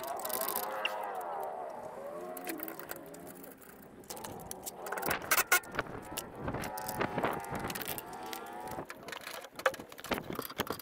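Cordless impact wrench running in bursts on the Land Rover Defender's rear suspension bolts: its motor whine rises and falls in pitch as the trigger is worked, with a few sharp knocks, the loudest about five seconds in.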